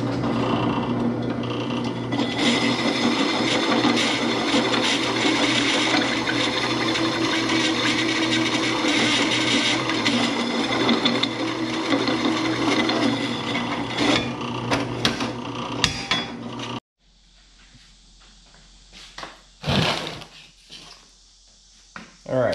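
Drill press running with a step drill bit cutting into steel tube, a steady machine sound that cuts off abruptly about three-quarters of the way through. A couple of short knocks follow.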